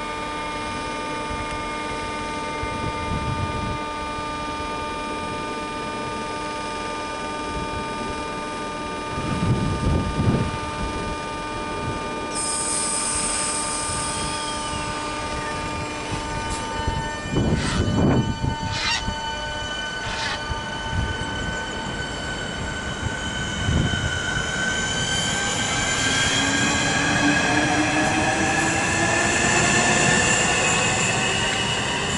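Class 465 Networker electric train moving through a station. Its traction equipment gives a steady whine of several held tones, with a few knocks from the wheels over the track about halfway through. Near the end a rising electric whine comes in as a train accelerates.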